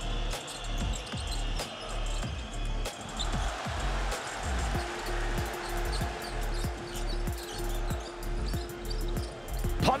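Basketball dribbled on a hardwood court, the bounces coming in a steady rhythm over a constant haze of arena noise. A steady held tone joins about halfway through.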